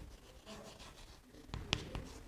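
Faint sounds of writing, soft scratchy strokes with a few short sharp taps about one and a half seconds in.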